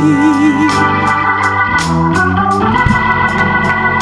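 Organ holding sustained chords in a gospel hymn, with hand claps keeping the beat. A singer's held note with vibrato trails off in the first second.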